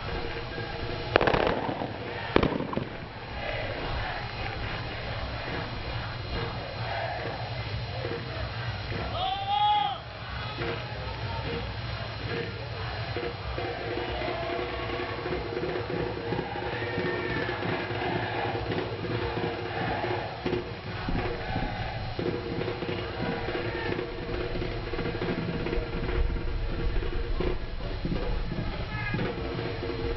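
Open-air football stadium ambience: a steady low hum with distant voices. Two sharp bangs come near the start, about a second apart, and a single rising-and-falling call comes around ten seconds in.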